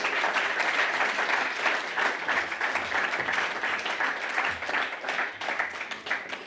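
Audience applauding: steady, dense clapping that thins out near the end.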